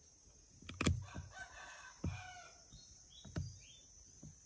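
A rooster crowing once, a call of about a second and a half, with a few dull thumps around it, the loudest just before the crow. A couple of short high chirps follow near the end.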